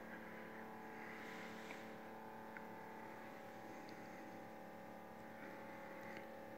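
Faint, steady hum made of several even tones, with a faint tick or two.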